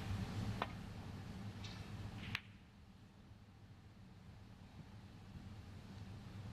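Snooker cue tip striking the cue ball with a sharp click about half a second in, then a second, sharper click as the cue ball strikes a red about two seconds later, over a low steady hum.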